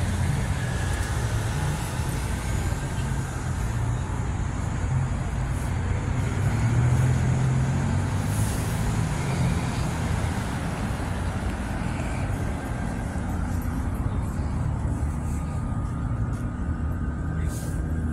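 Steady city street traffic noise: a continuous low rumble of road vehicles and engines.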